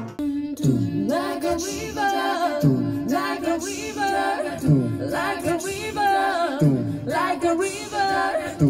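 Small mixed a cappella vocal group singing into microphones: voices over a held low note, with a low part sliding down in pitch about once a second.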